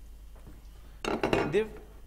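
A short clatter of kitchen utensils against a frying pan and dishes, starting about a second in: a quick run of clinks and knocks lasting about half a second.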